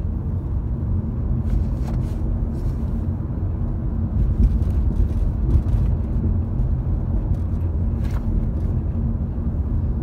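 Steady low rumble of road and engine noise inside a moving car's cabin, with a few faint clicks.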